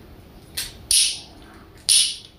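Xiangqi pieces clacking sharply: a soft click, then two loud clacks about a second apart.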